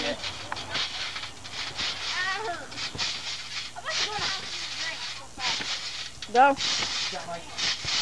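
People bouncing on a backyard trampoline: soft thumps and rustles of the mat, about once a second, with children's voices and short calls.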